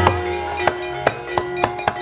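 Javanese gamelan ensemble playing, with ringing metallophone tones under a run of sharp percussive knocks, about three a second.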